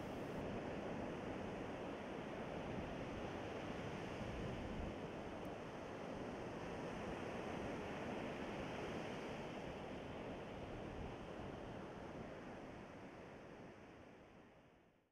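Steady outdoor coastal ambience, an even rushing hush of wind and sea, fading out over the last few seconds.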